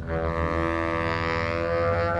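Saxophone coming in on a long, held note, with a steady low bass drone beneath it.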